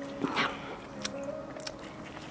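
An Amur tigress biting and chewing raw meat, with one louder crunch about half a second in and a few smaller clicks after it.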